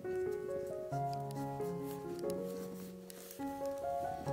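Background music: a slow melody of held notes that change every half second or so.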